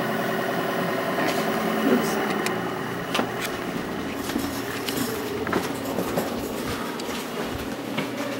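Steady machinery hum from laboratory equipment, made of several even tones, with scattered light clicks and knocks over it.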